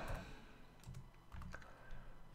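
A few faint keystrokes on a computer keyboard, about a second in.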